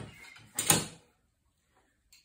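A metal sash clamp being set against a wooden chair: one short, loud sliding clunk about half a second in.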